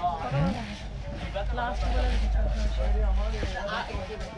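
People's voices talking, not clearly made out, with a low rumble for about two seconds in the middle.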